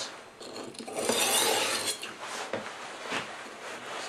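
Kitchen knife blade in a plastic angle guide drawn once across a sharpening stone, a rasping stroke lasting about a second, starting just under a second in. It is followed by a few light clicks and taps as the knife and guide are handled on the stone.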